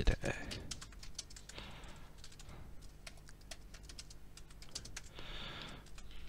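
Computer keyboard being typed on: irregular runs of key clicks, busiest in the first second.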